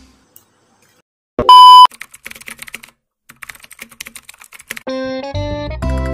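Background music breaks off, and after a second of silence a short, loud electronic beep sounds, followed by a few seconds of rapid light clicking. The music comes back near the end.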